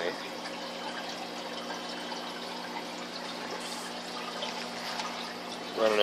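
Steady trickling and splashing of aquarium water from a small running filter, with a faint low hum underneath.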